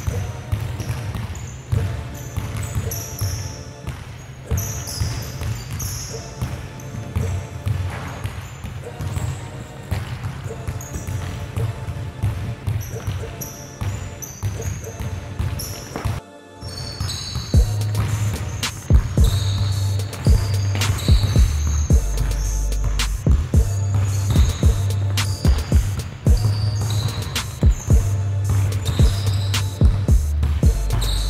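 Basketballs dribbled over and over on a hard floor, with background music that has a heavy, steady bass line. The sound cuts out briefly about sixteen seconds in.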